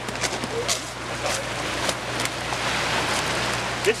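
Steady rushing noise of surf at a pebble shoreline, with scattered sharp clicks and knocks of stones and handling as a caught bluefish is unhooked on the cobbles.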